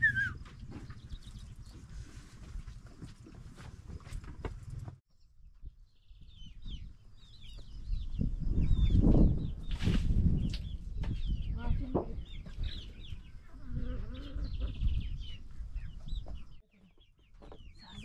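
For the first five seconds, a flock of sheep moving about on a barn floor: a patter of many small knocks. Then domestic chickens clucking, with many short high calls scattered over a low rumbling that is loudest about nine seconds in.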